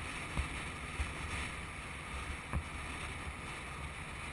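Motorcycle riding at low speed, its engine running as a steady low rumble under wind noise on the bike-mounted microphone, with a few faint knocks.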